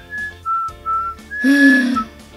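A woman whistling a short phrase: a high note, two slightly lower notes, then a longer high note near the end, where a lower voiced sound comes in under the whistle and is loudest. Faint background music runs underneath.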